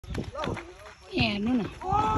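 People's voices talking and calling out, with one longer drawn-out call about halfway through.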